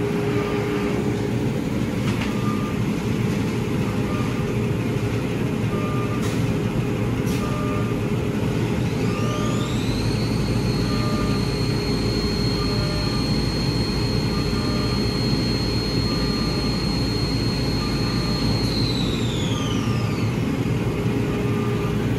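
Epilog laser engraver running a raster engraving job on a keychain: a steady machine hum with a faint regular tick about once a second. A high whine glides up about nine seconds in, holds steady, and glides back down about twenty seconds in.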